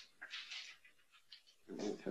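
Scratchy rustling and scraping of a microphone being handled after it caught on the table, in short irregular bursts with a few small ticks. Near the end a low voice murmur begins.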